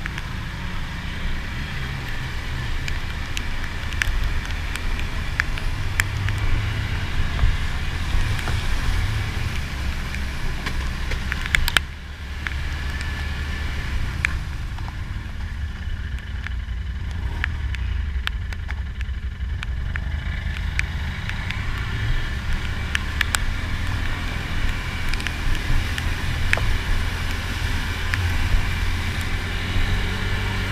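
ATV engine running steadily under load as it rides along a flooded trail, with the hiss of water churned by the tyres and scattered sharp ticks and knocks from water and debris hitting the machine.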